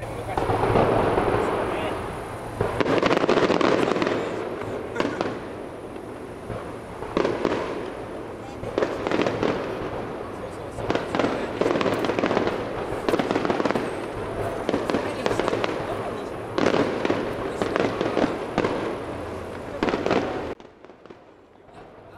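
Aerial firework shells bursting in a rapid run of booms and crackles, which cuts off suddenly near the end.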